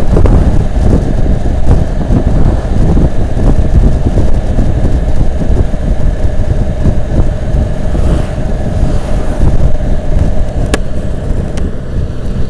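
Wind rushing over a helmet-mounted microphone, with the steady drone of a 2015 Can-Am Spyder RT's three-cylinder engine cruising in fourth gear at about 60 km/h.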